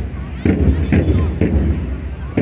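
Marching drums beaten in a steady march beat, about two strokes a second.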